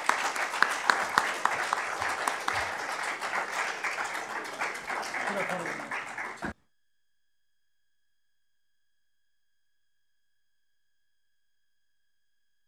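Audience applauding, with a few voices mixed in, until it cuts off abruptly about six and a half seconds in, leaving near silence.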